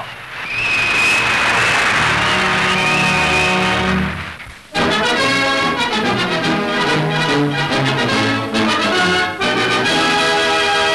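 Orchestral newsreel music led by brass, loud throughout. A full, noisy passage fades and breaks off about halfway through. A new brass-led passage then starts: the newsreel's closing music under its end title.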